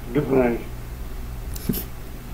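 A man's short voiced exclamation near the start, then a brief breathy burst about a second and a half later as he laughs, over a steady low electrical hum.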